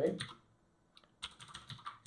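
Typing on a computer keyboard: a single keystroke about a second in, then a quick run of key clicks as a name is typed.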